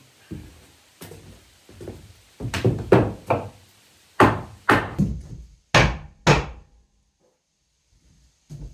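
Back of a hatchet head hammering on a wooden block against a burned 2x8 floorboard, driving the board tight. A run of wooden knocks: light taps at first, then a quick cluster, then five hard blows about half a second apart that stop about a second before the end.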